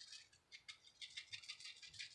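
Plastic spice shaker shaken over a raw pork chop, the seasoning powder rattling faintly in quick, irregular ticks.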